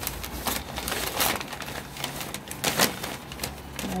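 White packing paper in a cardboard box rustling and crinkling as it is handled and pulled back, in irregular bursts. The louder rustles come about a second in and again near three seconds.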